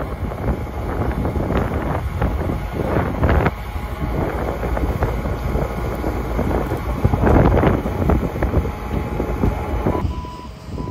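Compact track loader's diesel engine running under load as its bucket pushes soil to backfill a hole, with heavy wind buffeting the microphone.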